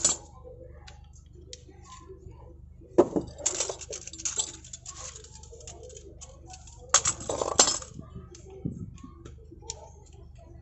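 Clicks and clinks of a side-mirror retract mechanism being worked by hand with pliers, scattered small clicks with louder clusters of clattering about three and seven seconds in.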